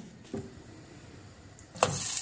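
Quiet handling, then near the end raw lahmacun dough laid into a hot frying pan starts to sizzle with a steady hiss.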